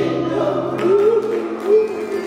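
Gospel choir singing over held instrumental chords, with a voice swooping up in pitch about a second in and again near the end.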